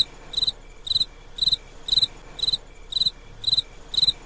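Stock 'crickets' sound effect: a cricket chirping in an even rhythm of about two chirps a second. It is the comedy cue for an awkward silence, laid over dancing that has no music.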